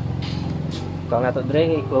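A small motorcycle engine idling with a low, even pulse, growing fainter in the second half. A voice speaks over it near the end.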